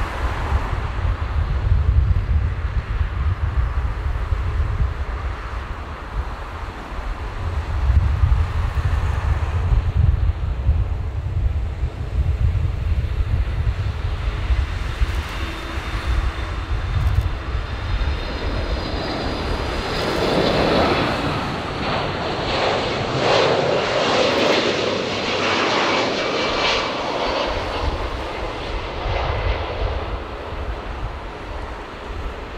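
Boeing 737 MAX 8's CFM LEAP-1B jet engines running at taxi power, a steady jet whine over a low rumble. The engine sound grows louder and fuller a little past halfway through.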